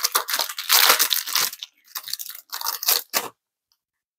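Clear plastic cellophane sleeve pulled open by hand, crinkling and tearing: a continuous rustle for about a second and a half, then several shorter crinkles.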